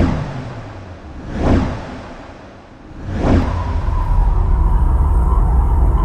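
Cinematic intro sound design for an animated logo: three whooshes about a second and a half apart, then a deep rumble swelling with a held tone, under a music bed.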